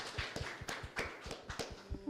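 A small audience of a handful of people applauding: scattered, irregular hand claps.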